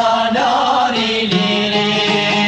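Male voices singing together in an Albanian song, holding long notes over instrumental backing.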